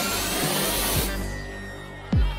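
Electronic soundtrack music building up: a rising whooshing sweep with a thin rising tone climbs over a held bass note, then cuts off about a second in, leaving the bass fading toward the beat.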